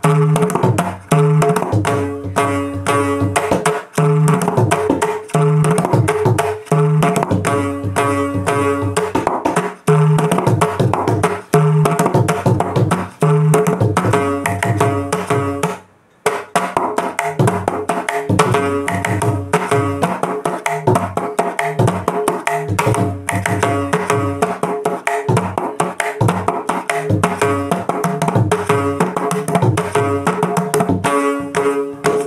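Mridangam played solo with both hands: rapid strokes on the tuned right head ringing at one steady pitch, mixed with deep strokes on the left bass head. The playing stops for a moment about halfway, then carries on.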